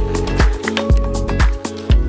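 Background music with a steady drum beat.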